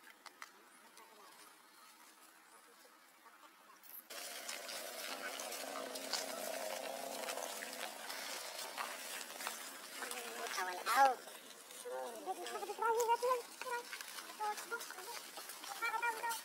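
Macaques calling: a series of short, high-pitched calls that rise and fall in pitch, starting about ten seconds in, over steady outdoor background noise that starts suddenly about four seconds in.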